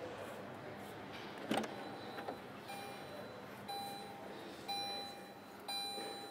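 Lada Vesta's driver's door latch clicks open about one and a half seconds in, then the car's electronic warning chime starts beeping in a steady repeat of about once a second, the signal of an open driver's door with the ignition and lights switched on.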